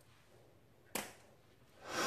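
A single sharp click about a second in, then a brief rush of noise that swells and fades near the end.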